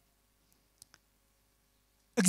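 Near silence, with two faint clicks about half a second and just under a second in.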